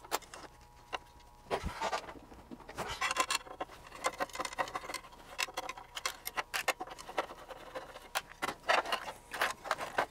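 Irregular small metal clicks, taps and short scrapes as a screwdriver works on the aluminium chassis of a Tektronix PS503A power-supply plug-in being taken apart and the module is handled.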